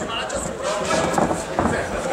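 Indistinct voices and chatter in a large sports hall.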